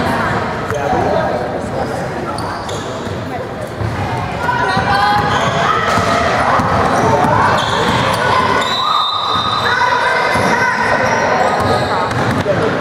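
Basketball bouncing on a hardwood gym floor during play, with players' and spectators' voices echoing in the large gym.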